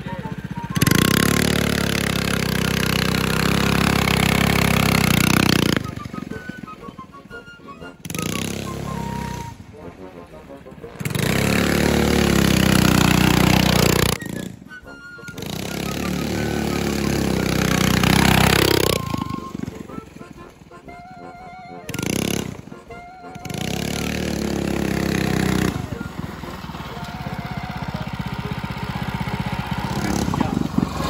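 Predator 212 small single-cylinder engine on a custom minibike trike, revving up and falling back four times in a few seconds each time, louder and quieter as it comes near and moves away.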